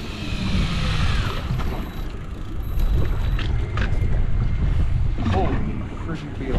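Wind buffeting the microphone over the rush of sea water around the boat, a steady low rumble. A short voice sounds about five seconds in.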